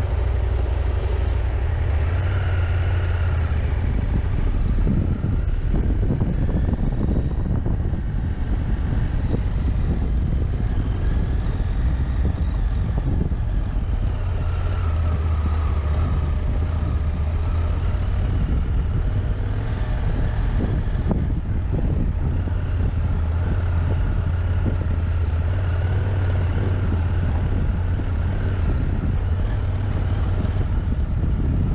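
Husqvarna Norden 901 adventure motorcycle's parallel-twin engine running at low speed with a steady low note that rises and falls slightly, on a rough dirt trail, with frequent short knocks and rattles.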